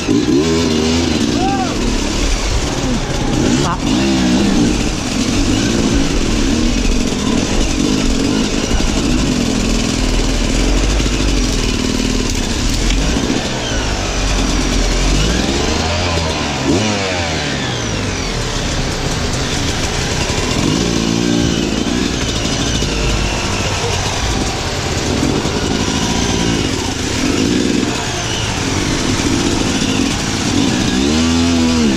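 Sherco enduro motorcycle engine revving up and down again and again as the bike works its way up a rocky stream bed, with water splashing under the wheels.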